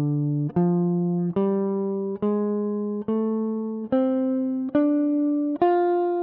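Clean-toned Gibson ES-137 semi-hollow electric guitar slowly picking the D minor blues scale upward from the D on the A string, one single note at a time. A new note starts about every 0.85 s and each is held until the next, rising step by step.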